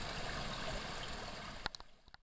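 Steady rushing background noise with no clear pitch. A couple of sharp clicks come near the end, then the sound falls away abruptly.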